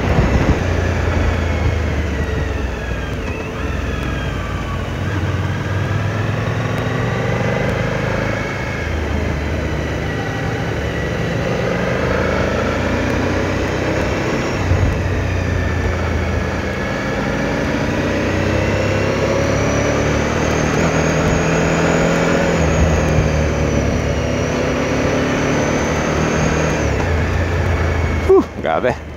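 Motorcycle engine running under way, its pitch rising and falling as the rider throttles and shifts, over steady wind and road noise.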